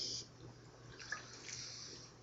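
Faint slosh and swallowing of liquid as a man drinks from a glass bottle, over quiet room tone.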